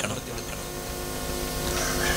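A pause in the speech filled by a steady low hum with several faint held tones, growing slowly louder.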